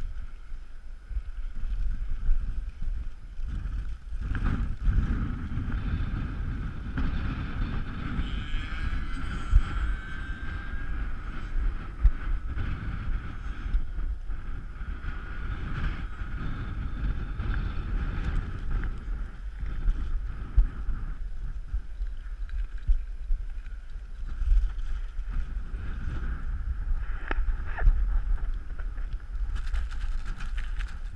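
Heavy wind buffeting on the microphone, with a steady high-pitched whine from a radio-controlled model aircraft's motor running underneath it.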